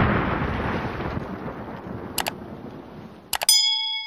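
End-screen sound effects: the tail of an explosion effect dying away over about three seconds, then a couple of mouse-style clicks and a bright bell ding about three and a half seconds in that keeps ringing.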